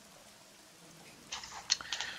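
Near silence on a voice-chat call, then a brief faint hiss with a couple of small clicks in the last half second.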